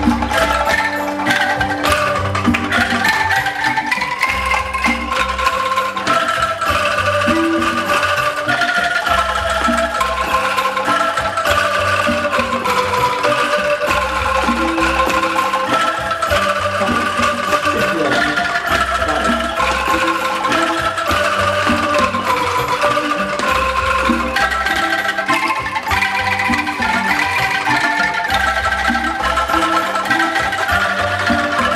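Bamboo angklung ensemble playing a melody, the shaken bamboo tubes sounding as trilled, rattling notes in chords. Deep bass notes come in regularly beneath, each held for a second or two.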